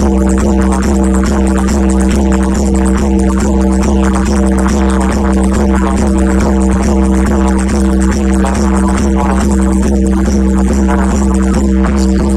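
Loud music built on a steady droning tone over heavy, unbroken bass.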